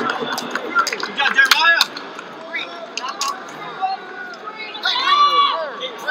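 Wrestling coaches shouting, unintelligible, with two longer shouts about one and a half and five seconds in, and a few sharp clicks between them.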